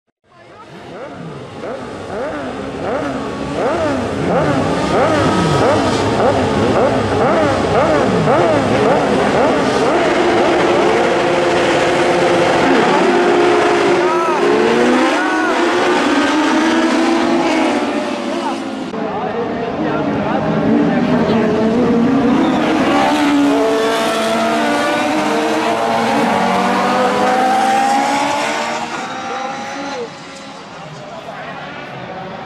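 Several autocross race cars running together, their engines revving up and dropping back again and again through gear changes, with more than one engine heard at once. The sound builds up over the first few seconds.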